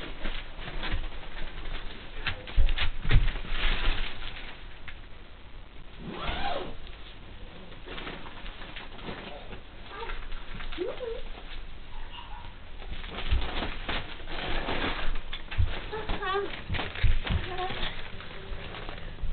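Bearded dragon's claws scratching and scrabbling against a mesh screen enclosure wall, in irregular bursts, with a few short pitched calls or vocal sounds in the middle and near the end.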